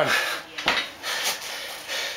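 A few metallic clanks from the stacked iron plates of a heavy 160 lb plate-loaded dumbbell as it is rowed up and lowered.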